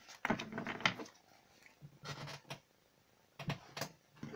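Light handling noises at a tabletop: a run of soft rustles and taps near the start, then two shorter clusters later, with quiet gaps between.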